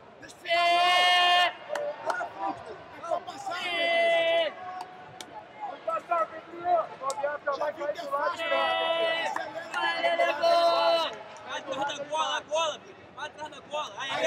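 Men's voices shouting from the sidelines of a jiu-jitsu match, with four long, drawn-out shouts held on one pitch and scattered crowd chatter between them.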